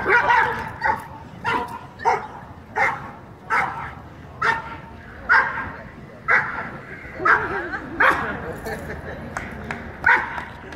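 Police dog barking repeatedly at the decoy, about one sharp bark a second.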